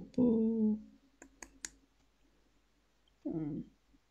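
Three sharp clicks of a computer mouse in quick succession about a second in, with a short wordless voiced sound from a man just before them and another near the end.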